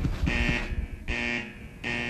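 Electronic sound effect of a production logo sting: a buzzing tone that pulses three times, about once every 0.8 s, over a low rumble.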